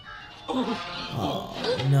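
Film soundtrack: animated characters' voices over background music, starting about half a second in.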